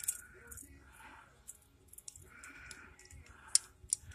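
Quiet handling of a new Honda push-mower carburetor turned over in the hand: soft rubbing and light plastic-and-metal clicks from its parts and levers, with one sharper click near the end.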